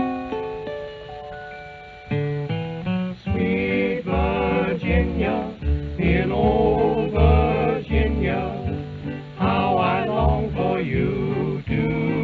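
Instrumental introduction by an early 1930s country string band. A few sustained, ringing notes fade over the first two seconds. Then guitars and string bass come in, with a fiddle playing the melody with a wavering vibrato.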